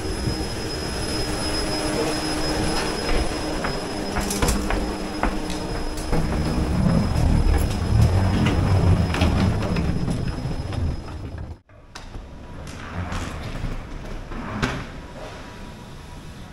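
Ambient noise of passengers walking off an airliner through the cabin aisle and along a jet bridge: a steady low rumble, loudest in the middle, with scattered clicks and knocks. It cuts off abruptly about three-quarters of the way through and gives way to quieter terminal-hall ambience with a few knocks.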